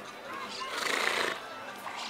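A horse close by makes one short, rough sound lasting about half a second, about a second in, with voices in the background.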